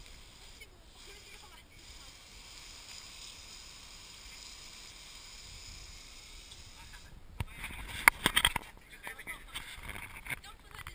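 Garden hose spray nozzle spraying water onto an abalone shell held in the hand, a steady hiss. About seven seconds in the spray stops, followed by a burst of loud knocks and handling clatter.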